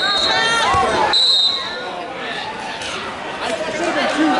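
Referee's whistle: a short blast at the start and a longer one about a second in, stopping the wrestling action, over shouting from the crowd. After the second blast the crowd noise drops to a lower murmur.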